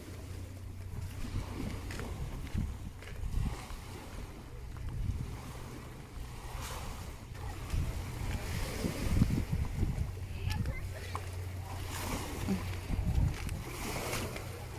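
Small sea waves washing onto a rocky, pebbly shore, under a steady low rumble of wind on the microphone.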